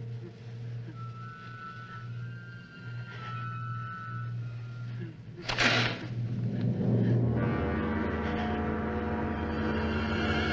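Suspense film score: a low sustained drone under faint high held notes, then a sudden crash about five and a half seconds in. After the crash a louder swell of held chords builds toward the end.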